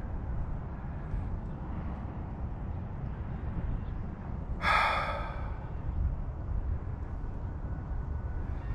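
Wind rumbling on the microphone, with one short breathy exhale, like a sigh, a little past the middle.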